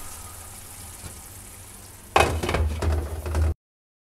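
Tomato-and-egg sauce still sizzling quietly in a hot frying pan. About two seconds in, a glass pan lid is set on with a loud clatter and knocks, and the sound then cuts off suddenly.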